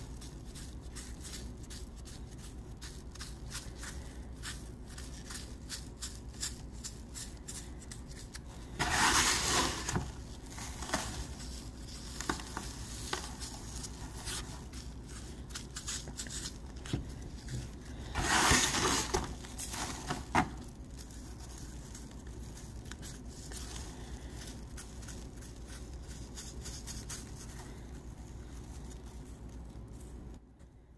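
Fingers pressing and rubbing a gritty silicon carbide and epoxy coating on a taped pistol grip: faint crackling and scraping of the grit, with two louder scraping rustles, one about nine seconds in and one about eighteen seconds in.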